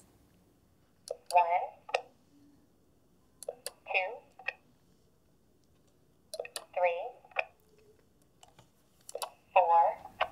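AbleNet LITTLE Step-by-Step communication switch pressed four times, about every three seconds: each press gives a sharp click followed by a short high-pitched recorded voice message as the device plays its next step.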